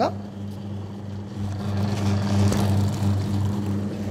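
Automatic electric sugarcane juice machine with stainless-steel rollers running: its motor gives a steady low hum, and a louder rough noise swells through the middle as it crushes cane to extract juice.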